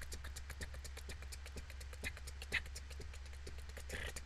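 Quiet MIDI percussion demo played back over a video call: a fast, even ticking pulse, about seven or eight ticks a second, over a steady low hum.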